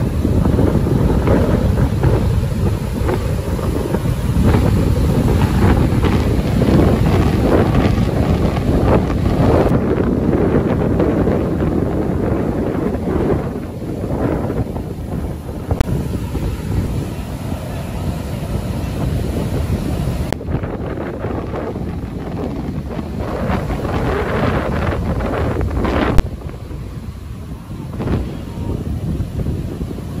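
Strong gusting wind buffeting the microphone over the rush of heavy storm surf breaking on the shore. The wind noise eases a little near the end.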